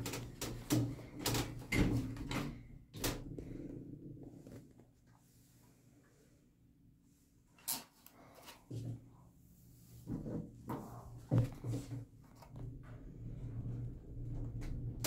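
Elevator motor running with a steady low hum, broken by a run of sharp clicks and knocks in the first few seconds and again past the middle, with a few seconds of near silence between them. The hum is back and steady near the end.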